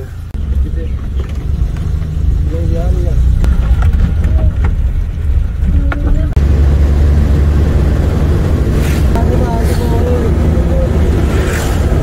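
Engine and road noise of a moving van heard from inside the cabin: a steady low rumble that grows louder about six seconds in.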